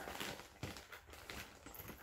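Faint light clicks and taps of costume jewelry being handled and set down on a marble tabletop, a faux-pearl necklace among it.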